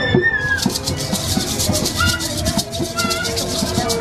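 A souvenir maraca shaken by hand in a quick, rhythmic run of rattling shakes, over background music.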